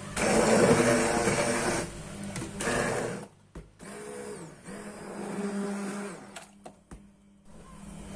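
Hand-held immersion blender puréeing a pot of lentil and potato soup. It is loudest for the first two seconds, then runs on in shorter bursts with brief stops about three seconds in and again near the end.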